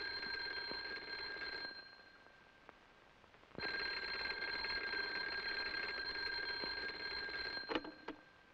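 Black desk telephone's bell ringing in two rings: the first stops about two seconds in, the second starts at about three and a half seconds and runs about four seconds, then cuts off with a clunk as the receiver is lifted near the end.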